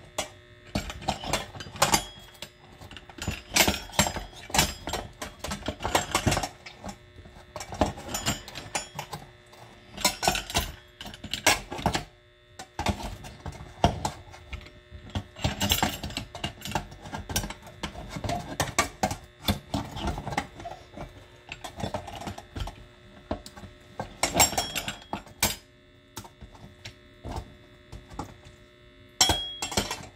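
Hand-cranked stainless steel food mill being turned as tomatoes are pressed through it, giving irregular runs of metal clicks and scraping with brief pauses between turns. A faint steady hum runs underneath.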